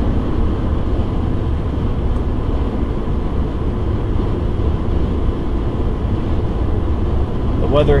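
Steady road noise heard inside a car's cabin at highway speed: a low, even rumble of tyres and engine.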